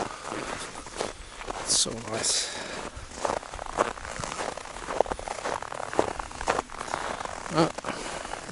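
Footsteps crunching in snow at an irregular walking pace, with a brief murmur or breath from the walker about two seconds in.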